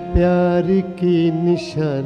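Live ghazal music: a male voice sings sustained notes that step up and down in pitch, with instrumental accompaniment.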